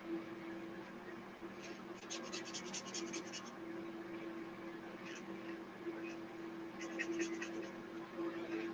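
Felt-tip marker scratching across paper in quick back-and-forth colouring strokes. They come in two bursts, about two seconds in and again about seven seconds in, over a steady low hum.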